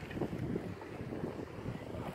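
Wind rumbling on a phone microphone, with faint indistinct voices in the background.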